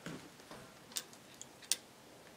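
A few faint, sharp clicks over a low background: one about a second in, a fainter one just after, and another a little later.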